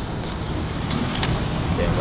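Steady road traffic noise with a low rumble, and a few light clicks in the first second and a half.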